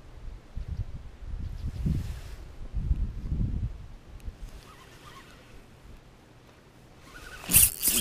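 Muffled low rumbling from handling near the body-worn microphone. Near the end comes a sudden loud rustle and swish of a rain jacket sleeve as the angler sweeps the spinning rod back.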